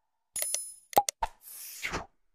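Sound effects for an animated subscribe button: quick clicks, then a short bell-like ding about half a second in. About a second in come more clicks with a pop, and a whooshing swish near the end.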